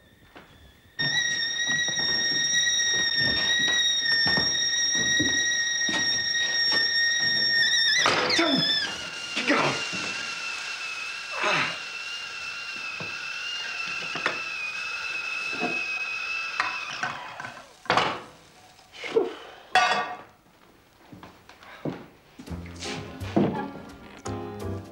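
Stovetop kettle whistling at the boil: a steady high whistle for about seven seconds that then drops lower and wavers for about nine seconds more before stopping, with knocks and clatter through it and a few separate knocks near the end.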